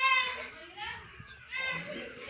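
High-pitched children's voices: a short call right at the start and another near the end.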